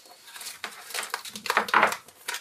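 Handling noises: a plastic multimeter and its test leads being picked up from a sheet of bubble wrap, with rustling and light knocks that grow louder in the second half.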